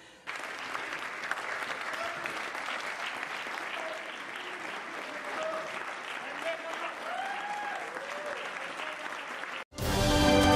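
Theatre audience applauding steadily at a curtain call, with a few voices calling out above the clapping. The applause cuts off suddenly just before the end.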